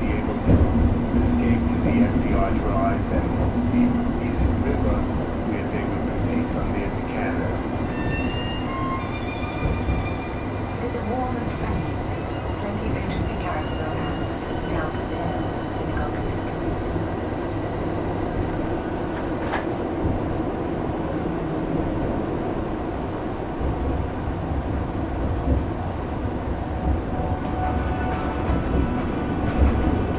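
Interior running sound of a Heathrow Express Class 332 electric train in the tunnel between Heathrow Central and Terminal 5: a steady rumble of wheels on rail with motor hum.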